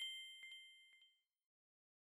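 Bright bell-ding sound effect for a notification-bell click, already struck and ringing out, fading away over the first second, with a few faint, shorter chimes on the same pitches about half a second and a second in.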